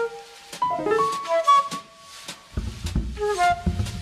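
Live improvised jazz: a flute plays quick, shifting phrases over piano, with light drum and cymbal strokes. Dense low piano or bass notes come in about two and a half seconds in.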